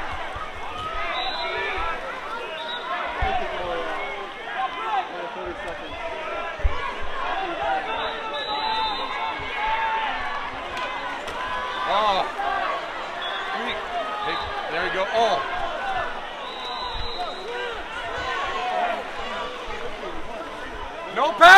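Many overlapping voices: spectators' chatter and calls around the pool, with no single voice standing out.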